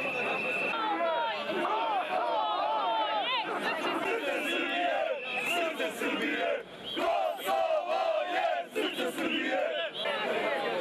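Large crowd of protesters shouting and calling out, many voices overlapping with no single speaker standing out. A steady high tone, whistle-like, sounds in the first second and again briefly about five seconds in.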